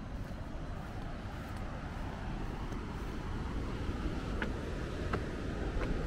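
Steady outdoor background noise, a low rumble with a light hiss over it, with a few faint ticks in the last two seconds.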